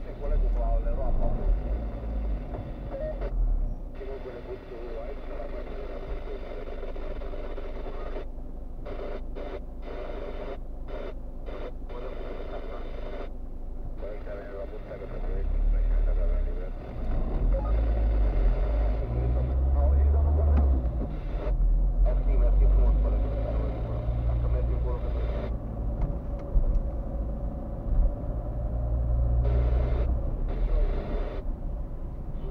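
Muffled voices from a car radio playing inside the car's cabin, with the car's engine and road rumble coming up in the second half as it moves off in traffic.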